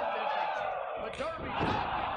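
A heavy thud about one and a half seconds in, typical of a wrestler's body hitting the ring mat, under commentary.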